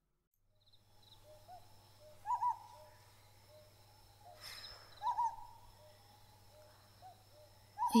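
Forest ambience of an owl hooting, its calls about two seconds in and again around five seconds, each with softer lower notes around it, over a steady low hum. A brief rushing noise comes just before the second call.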